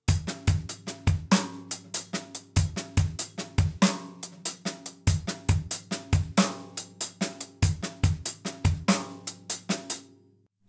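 Drum kit playing a halftime shuffle groove: a swung triplet pattern on the cymbals, bass drum strokes and soft ghost notes on the snare, in a steady even rhythm.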